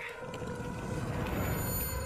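A low rumbling drone from a horror film trailer's soundtrack, with steady sustained tones above it. Thin, high tones come in about a second and a half in.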